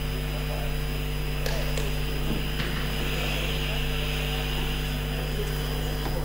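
Steady electrical mains hum with room noise on an open chamber microphone feed, with a few faint clicks about two seconds in.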